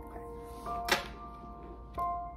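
Soft piano background music with slow sustained notes, and a single sharp knock about a second in.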